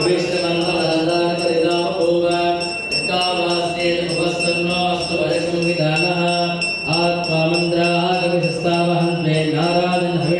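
Men chanting Hindu ritual mantras in a steady, continuous recitation, with a thin steady high ringing tone running underneath.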